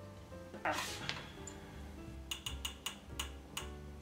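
Background music with a steady bass line. Over it, a bit over halfway through, comes a quick run of about eight sharp clicks from a hand tool tightening a bolt on the mini mill's Y-axis stepper motor mount.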